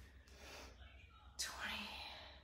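A woman's faint, breathy whispered voice sounds between reps of a workout, with a stronger breathy sound about one and a half seconds in.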